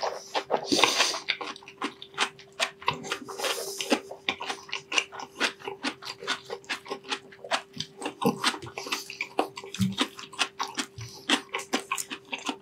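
Close-miked crunchy chewing of crispy deep-fried pork mesentery (chicharon bulaklak): a rapid, continuous run of crackling crunches, loudest in the first second or so. A faint steady hum runs underneath.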